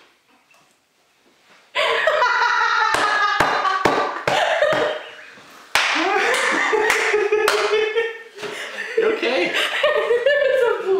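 After a quiet start, loud laughter breaks out suddenly about two seconds in and goes on, with several sharp hand claps scattered through it.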